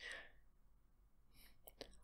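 Near silence, with a faint breath about a quarter of a second long at the start and a few faint clicks near the end, just before the voice resumes.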